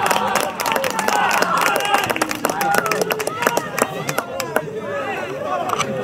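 Several people shouting and calling out on an outdoor football pitch, voices overlapping, as a goal is scored. Scattered sharp clicks run through the shouting.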